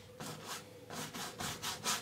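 A large flat bristle brush rubbing over stretched primed canvas in short, faint, scratchy strokes, dry-brushing a little white acrylic paint to pull out light rays.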